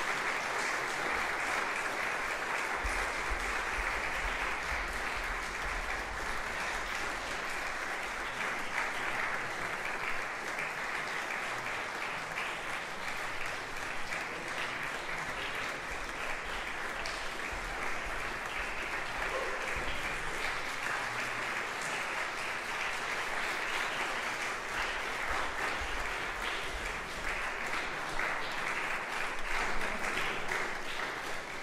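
Audience applauding steadily for the whole stretch, a dense, even patter of many hands clapping.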